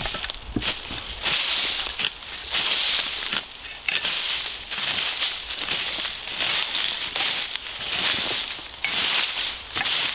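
Rake tines scraping and dragging through dry dirt, leaf litter and grass in repeated strokes, about one a second, clearing the ground down to bare soil.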